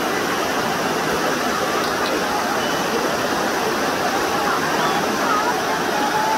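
Shallow river water rushing over rounded stones and rocks, a steady, even rush.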